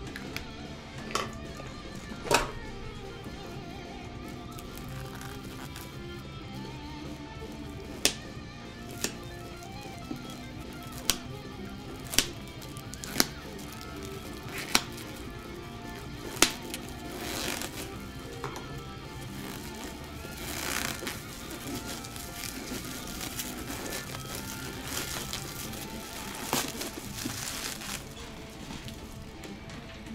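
Background music playing under handling noise: a string of sharp clicks and taps through the first half, then plastic wrap crinkling and rustling as a plastic-wrapped amplifier head is handled and lifted.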